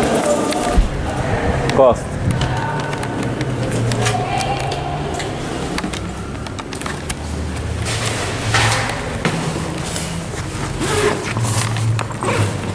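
Indistinct voices in the background, with footsteps and the rubbing and knocking of a hand-held camera being carried while walking.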